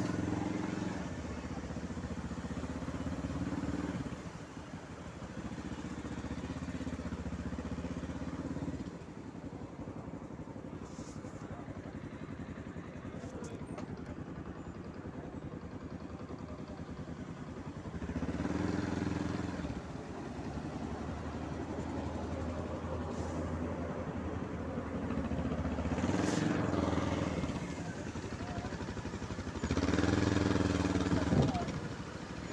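Motorcycle engine running as the bike is ridden slowly, the engine note swelling in several spells of a few seconds and dropping back in between.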